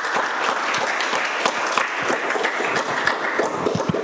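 Audience applauding: many people clapping in a dense, steady patter.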